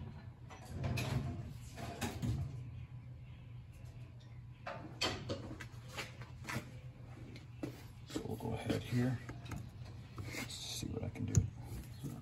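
Scattered clicks and clatters of hand tools being handled on a wooden workbench, over a steady low hum.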